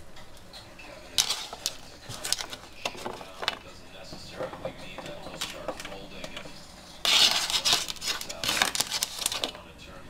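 Hands handling cut zucchini slices on a plate with a knife on it: light clicks and taps of pieces, fingers and utensils against the dish, with a denser, louder clatter from about seven seconds in lasting a couple of seconds.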